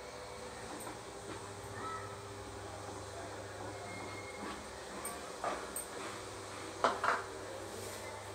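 A spatula scraping and stirring flour in a non-stick kadai, with a few light knocks and two sharper knocks against the pan near the end, over a steady low hum.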